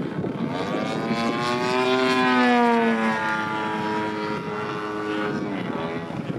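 Radio-controlled Extra 300 LX aerobatic model plane flying overhead, its motor and propeller giving one pitched tone. The tone rises over the first two seconds, then slowly falls and eases off near the end.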